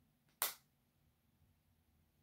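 One short, sharp pop about half a second in, as the cap comes off a small perfume sample vial.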